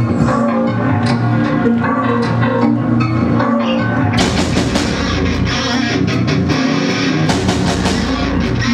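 Live heavy metal band playing: distorted electric guitars over bass and a drum kit. About four seconds in the sound turns denser and harsher as the band drives into a heavier part.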